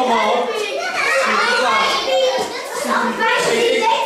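A crowd of young children talking and calling out over each other.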